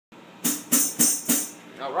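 Four quick, evenly spaced strikes on a drum kit, bright and jingly on top, about three to four a second, followed by a short spoken word.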